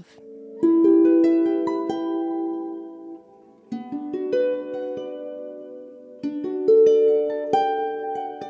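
Lever harp played solo: plucked notes and chords that ring on, in short phrases with a brief lull about three seconds in. This is the instrumental introduction to a song, before the singing starts.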